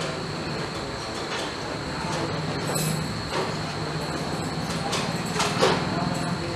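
Steady shop room noise, a constant hum and rush with a thin high whine over it, and a brief rustle about five and a half seconds in.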